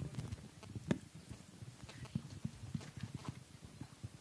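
Faint, irregular low taps and knocks, several a second, with one sharper click about a second in.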